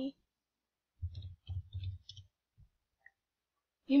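A quick run of four or five dull clicks in just over a second, then one faint tick: clicks on the computer being used for navigating.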